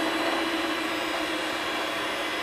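Electric hand mixer running steadily at an even whir, its beaters whipping egg whites into foam.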